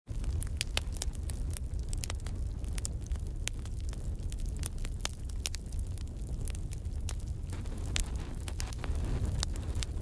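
Fire crackling and popping over a steady low rumble, with sharp pops scattered irregularly.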